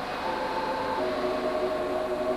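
Production-line machinery on a factory floor: a steady rushing noise with a few held whining tones that change pitch about a second in.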